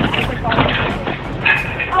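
Indistinct voices calling out, over a low steady rumble.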